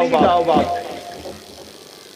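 A man's voice speaking in Bengali, his phrase trailing off about a second in, followed by a pause with only faint background noise.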